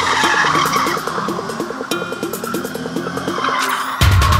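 A Ford Mustang's rear tyres skidding as it drifts on tarmac, with an electronic music track playing over it.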